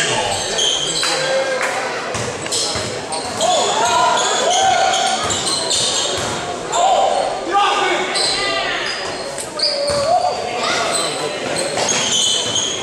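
Basketball game sounds echoing in a large gym: a ball bouncing on the hardwood court, repeated short high sneaker squeaks and players' and spectators' voices calling out.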